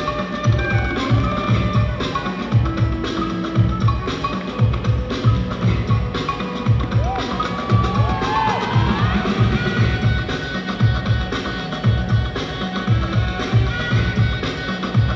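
Dance music with a steady, heavy drum beat and a prominent bass line, played for breakdancers to battle to.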